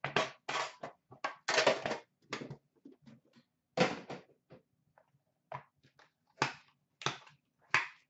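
Cardboard trading-card box from a hockey card tin being handled and opened on a glass counter: a run of irregular short knocks, scrapes and rustles with brief gaps between them.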